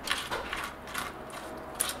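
A melon scoop scraping seeds and pulp out of a halved cantaloupe, in a run of short, soft scrapes as the seeds drop into a bowl, with a sharper tap near the end.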